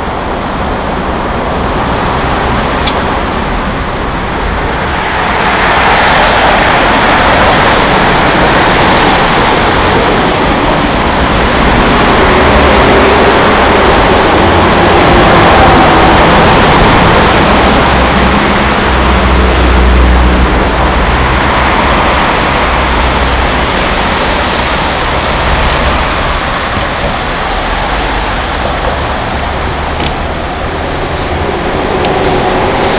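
Steady road traffic noise from vehicles on the bridge roadway beside the footpath, a dense rushing rumble that swells louder in the middle as vehicles pass close by and eases off toward the end.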